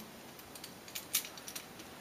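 Faint metallic clinks and ticks of a metal chain necklace being handled and swung, a few light clicks clustered about a second in.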